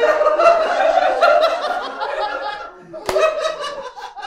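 A young girl laughing in a run of giggling bursts, broken by a short pause near the end.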